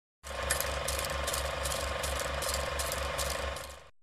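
Film projector running, as a countdown-leader sound effect: a steady mechanical whirr with a quick, regular rattle of clicks, fading out near the end.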